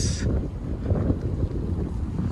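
Wind buffeting the microphone of a handheld camera carried outdoors: a gusty, uneven rumble.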